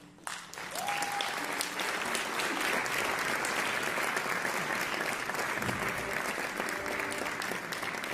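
Concert audience applauding, starting just after the orchestra's final chord dies away and going on steadily, with a voice calling out about a second in.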